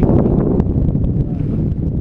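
Wind buffeting a small action camera's microphone: a loud, steady low rumble.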